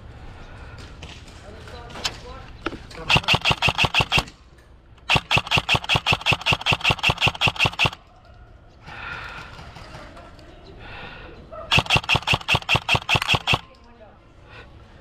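Airsoft rifle firing three fully automatic bursts of rapid, evenly spaced shots: a short one about three seconds in, a longer one of nearly three seconds from about five seconds in, and a third near the end.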